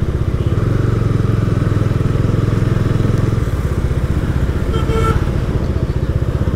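Motorcycle engine running steadily at riding speed, heard from the rider's own bike as a dense low exhaust pulse, with road and traffic noise. A brief high tone sounds about five seconds in.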